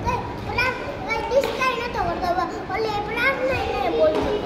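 A young child talking in a high voice, with other children's voices around him.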